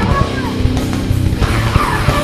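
Extreme metal recording: heavily distorted guitars and drums played at full tilt, with short squealing glides in pitch over the top.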